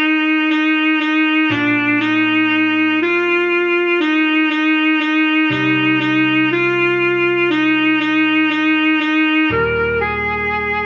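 Alto saxophone playing a simple pop melody in short repeated notes, over low sustained backing chords that change about every four seconds.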